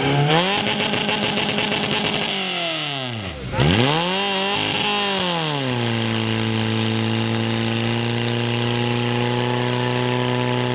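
Portable fire pump engine running hard at high revs. Its pitch sags to a deep dip about three and a half seconds in, then climbs back and holds steady as the pump drives water out through the hose lines toward the targets.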